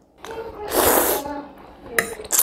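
A man eating spicy instant noodles lets out one loud, breathy rush of air through the mouth about a second in, lasting about half a second. A short sharp slurp of noodles follows near the end.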